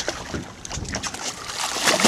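Water sloshing and splashing as a hooked tarpon thrashes at the surface beside the boat, with wind buffeting the microphone; a sharp click right at the start and a louder splash near the end.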